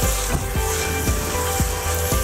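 Spaghetti being tossed and mixed in a hot pan with two utensils: irregular light knocks of the spoons against the pan over a faint sizzle, with background music throughout.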